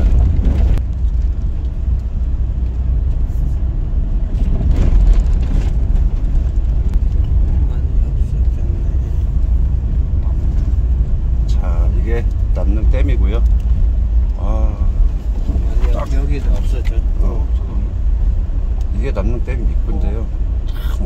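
Vehicle driving along an unpaved dirt road: a steady low rumble of engine and tyres. Voices talk briefly in the second half.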